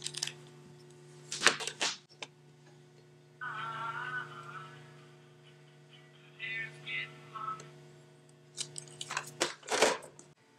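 Music, thin and tinny, coming faintly from the earpiece speaker of a rewired 1960s rotary telephone handset in two short snatches. Sharp knocks and clatter from handling the handset come before and after, and a steady low hum runs underneath.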